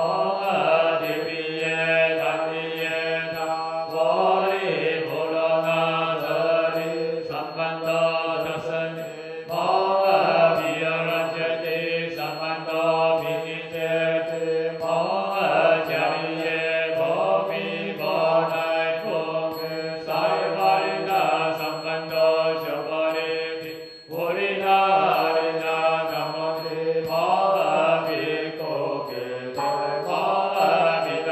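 A congregation of Buddhist monastics and lay devotees chanting together in unison, a steady, sustained liturgical chant sung in long flowing phrases. The chant breaks off briefly about three-quarters of the way through, then resumes.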